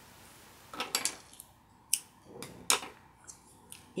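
Scissors cutting the crochet thread and being handled: a few short, sharp clicks and snips, the loudest near the end.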